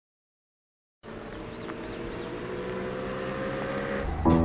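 After a second of silence, a vehicle engine starts to be heard, running steadily with its pitch slowly rising and its level growing as it gathers speed. A bird chirps four times in quick succession soon after the sound begins.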